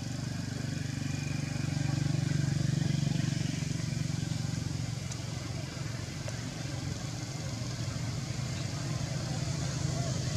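A motor engine running steadily, a little louder about two to three seconds in.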